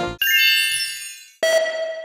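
Background saxophone music cuts off, then two ringing ding sound effects follow: a bright, high chime, and about a second later a lower bell-like ding, each fading out.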